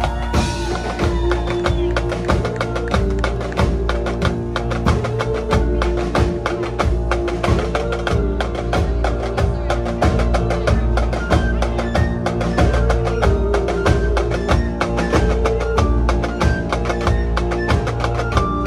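Live band playing rock music, with a snare drum close by struck in a quick, steady rhythm.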